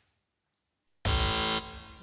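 Quiz-show buzz-in buzzer sounding once about a second in, a contestant buzzing to answer: a harsh electronic buzz of about half a second that then fades away.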